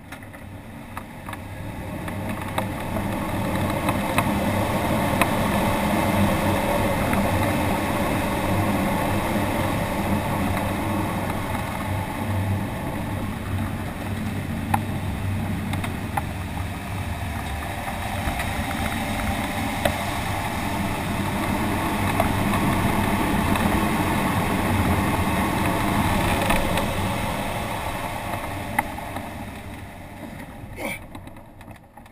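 Air rushing over the canopy of an ASK-21 two-seat glider in aerobatic flight. It swells over the first few seconds as speed builds, eases a little midway, rises again and fades near the end. A few light ticks come through the rush.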